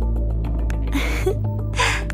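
Background music with a steady low bass, over which a woman gives two short breathy gasps, one about a second in and one near the end.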